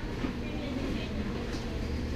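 A steady low hum of indoor background noise, with faint voices in the background.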